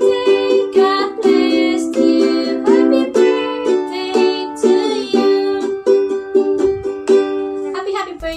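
Ukulele strummed in a steady rhythm of chords, with a woman singing along.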